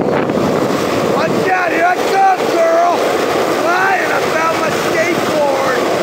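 Skateboard wheels rolling on pavement, a steady rough rumble with wind buffeting the phone microphone. Over the middle, several short gliding, whistle-like tones come and go.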